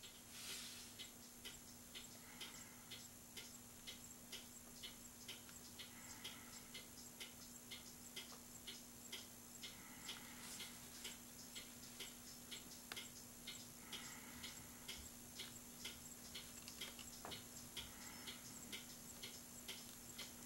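Near silence: faint, regular ticking, a few ticks a second, over a steady low hum of room tone.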